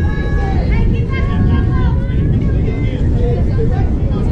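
Spectators' voices calling out and chattering at a softball game, over a steady low rumble.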